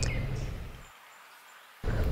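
Faint outdoor background noise, a low rumble with a light hiss, that fades out to near silence about a second in and comes back abruptly near the end.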